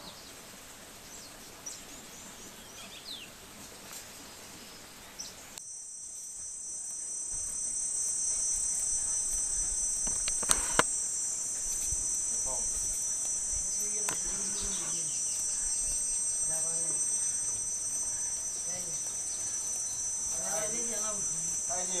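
Steady, high-pitched drone of an insect chorus, cicadas or crickets, starting abruptly about six seconds in and running on; before it, a quieter stretch with a few faint bird calls.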